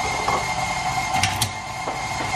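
Steady whirring hum of a running kitchen appliance, with a few light clicks of a utensil.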